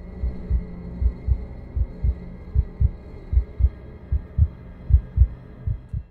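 Heartbeat sound effect: low double thumps, lub-dub, about one pair every 0.8 seconds, over a steady low drone with a faint high tone.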